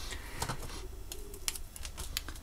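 Half a dozen light, sharp clicks and taps, irregularly spaced, as a plastic gel pen is handled and brought to a sheet of paper, over a faint low hum.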